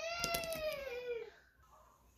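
A domestic cat meowing once, one long call that rises and then falls in pitch, lasting about a second and a half.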